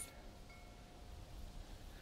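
A faint chime ringing on a steady pitch, dying away a little over a second in, over a quiet outdoor background.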